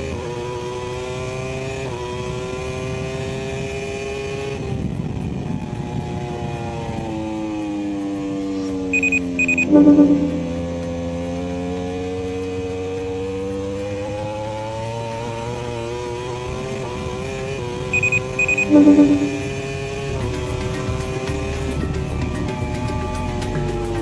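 Racing motorcycle engine at speed, its pitch rising and falling as it accelerates and slows, with small steps in pitch as it shifts gear. Twice, about nine seconds apart, a short run of high beeps ends in a brief louder blip.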